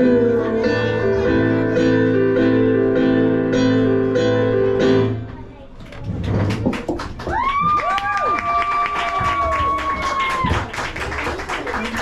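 Electric keyboard holding the final sustained chords of a song, which die away about five seconds in. Audience applause follows, with cheers, one of them a long high cheer held for about three seconds.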